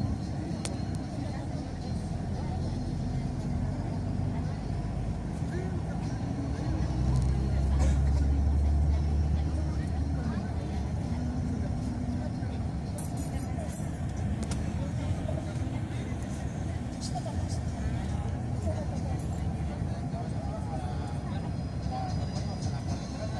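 Engine and road noise of a motor vehicle heard from inside while it drives, a steady low rumble that grows louder for a few seconds about seven seconds in.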